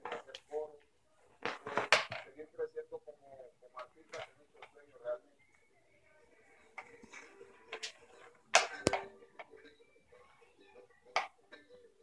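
Indistinct voices talking in a small room, with several sharp knocks and clatters; the loudest come about two seconds in and about nine seconds in.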